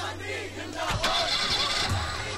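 A car door shuts with a thump about a second in, and the car's engine starts, over the voices of a crowd.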